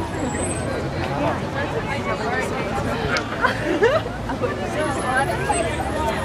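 Crowd of onlookers talking over one another on a city street, with a low vehicle engine rumble that grows stronger near the end.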